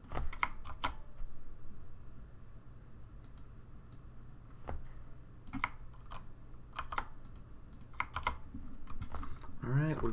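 Typing on a computer keyboard: a quick run of keystrokes in the first second, then scattered single keystrokes and short runs.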